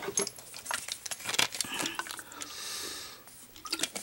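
A person taking a drink of water to ease a dry throat: clicks and clinks of the drinking vessel being handled, a brief soft hiss in the middle, and small mouth and swallowing sounds.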